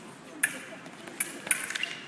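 Foil blades clashing: a sharp metallic clink about half a second in, then a quicker run of clinks a little past the middle.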